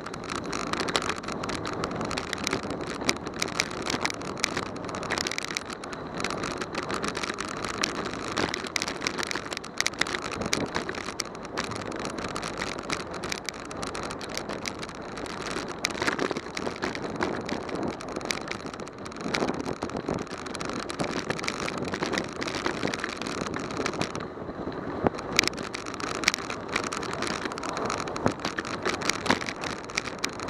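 Bicycle riding along a paved street: a steady rush of wind and tyre noise, with frequent small clicks and rattles from bumps in the road.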